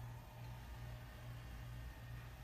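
A low, steady hum that swells and dips about three times a second, over faint room hiss.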